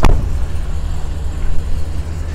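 A sharp click at the very start, then a steady low rumble with no distinct events.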